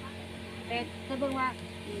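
A woman speaks briefly over a steady low mechanical hum.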